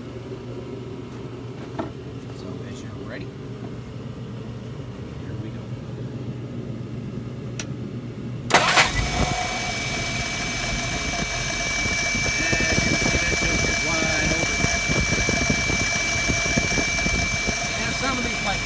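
Jeep CJ5 engine on a freshly fitted single-barrel carburetor restarted warm: after a quieter stretch it fires suddenly about eight and a half seconds in and settles straight into steady running with no stumble, a thin high steady tone riding over it.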